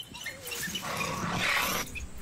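Honey badger and African wild dogs scuffling: a few short, high squeaky calls, then a harsh growl lasting about a second.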